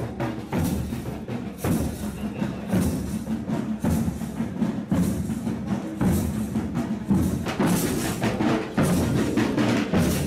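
Marching band drums, bass drum included, beating a steady march rhythm with a strong beat about once a second.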